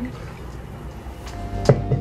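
Background music with steady held notes comes in about a second in. Just after it, a glass wine bottle is set down with a sharp knock, followed by a lighter knock.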